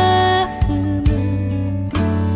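Slow, gentle pop ballad: a woman's voice ends a held sung note about half a second in, over guitar and a soft bass, with new chords struck about once a second.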